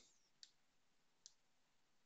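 Near silence with two faint, short clicks, about half a second and just over a second in.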